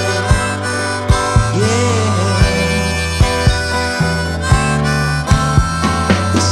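Harmonica playing an instrumental break over strummed acoustic guitar and electric bass, with a regular beat.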